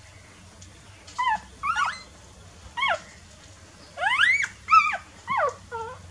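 Newborn puppies whimpering and squeaking while nursing: a string of about seven short, high-pitched cries that slide up or down in pitch, starting about a second in, the loudest a little before the end.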